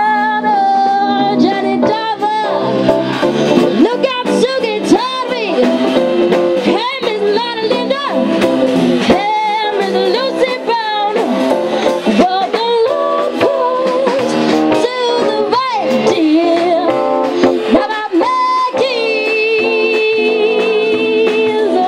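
Live band music: a woman sings with a wavering, sliding voice over guitar and drums.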